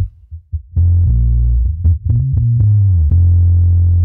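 A looped bass line playing back: a short gap with a couple of brief blips near the start, then a long, low sustained note that bends in pitch in the middle. The joins between the loop repeats play without a pop, because the clip ends have been given a very short fade.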